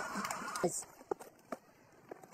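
Faint voices and background noise from a cricket broadcast trailing off, then near silence broken by a few short faint clicks.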